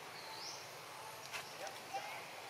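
Steady outdoor background hiss with a short, high rising chirp about a third of a second in, then two sharp clicks in the second half.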